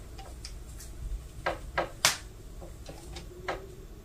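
A few soft, scattered clicks and ticks over low room hum as hands bear down on a Cricut EasyPress heat press during its timed press.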